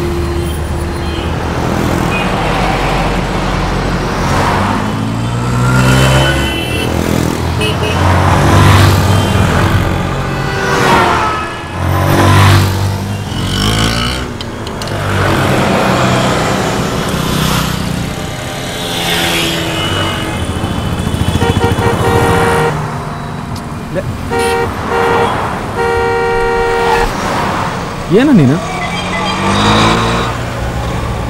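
Busy city street traffic: engines of buses, cars and motorbikes running, with vehicle horns honking, several short horn blasts in quick succession in the second half.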